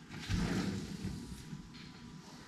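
Soft rustle and thump of a person sitting down on a cushioned fabric sofa, fading within about a second.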